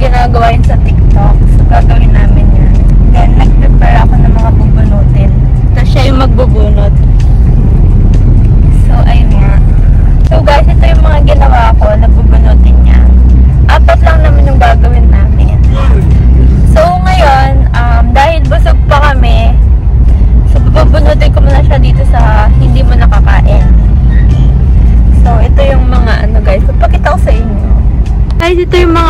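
A voice over a loud, steady low rumble inside a moving car's cabin.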